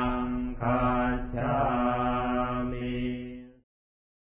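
Buddhist chanting in Pali, recited on one steady pitch in short phrases; it stops about three and a half seconds in.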